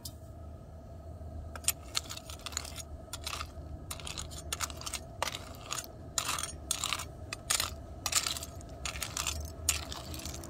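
Metal spoon scraping and clinking through a pot of hot lead wheel weights and their steel clips, in a run of irregular clicks and scrapes, over a low steady rumble.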